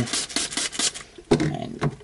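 Plastic tissue-culture containers and a spray bottle being handled and shifted on the cabinet's bench: irregular scrapes and light knocks, with a louder knock about a second and a half in.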